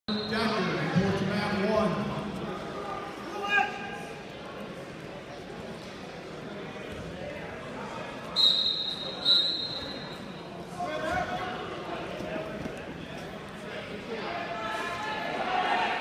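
Wrestlers' feet and bodies thudding and scuffing on a foam wrestling mat in a large gym, with voices calling out. Two short, high-pitched tones come about eight and nine seconds in and are the loudest sounds.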